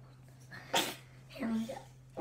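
A girl's short non-speech vocal sounds: a sharp breathy burst about three-quarters of a second in, then a brief voiced sound, over a steady low hum.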